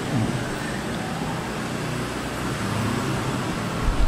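Steady rushing background noise with a low rumble, of the kind passing road traffic makes, swelling slightly toward the end.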